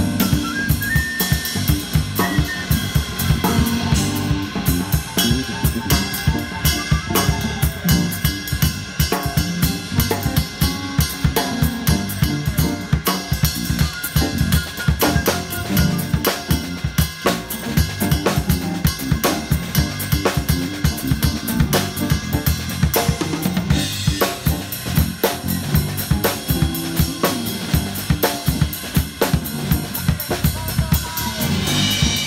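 Drum kit played with sticks in a steady, busy groove, with snare, bass drum and cymbal strikes heard close up.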